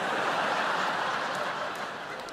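Large theatre audience laughing, loudest at the start and slowly dying down.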